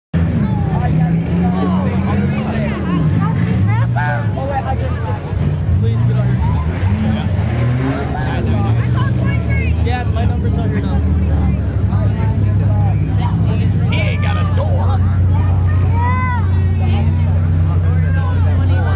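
Demolition-derby cars' engines running and revving unevenly, settling into a steadier idle from about ten seconds in, with voices chattering over them.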